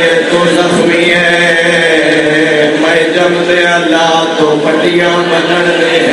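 A man chanting a lament into a microphone in long, drawn-out held notes.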